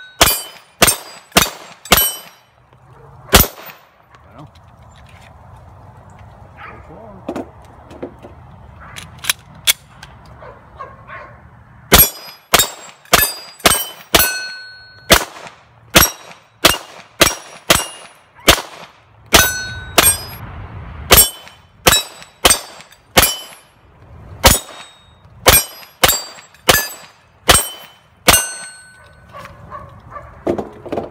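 Rapid semi-automatic 9mm pistol fire from a Glock 34 with a Wilson Combat match barrel, about two shots a second, with the ring of steel plate targets being hit after several shots. A short string at the start, a pause of about eight seconds, then a long steady string to near the end.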